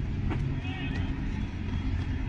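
Steady low outdoor rumble, with faint voices in the background.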